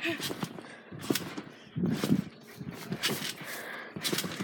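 Irregular soft thuds and rustles of feet bouncing on a trampoline mat, with a faint voice in the background.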